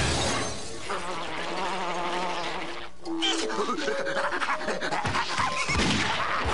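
Cartoon soundtrack: background music with sound effects and wordless vocal noises, broken by a sudden change about three seconds in.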